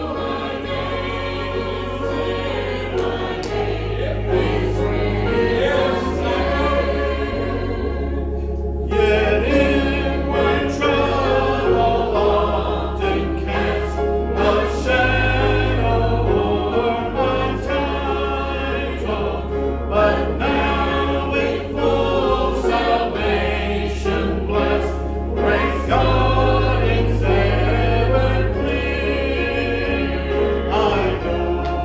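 A church congregation singing a hymn together over an instrumental accompaniment. The accompaniment holds deep, sustained bass notes that change every second or two, and the singing breaks briefly about nine seconds in.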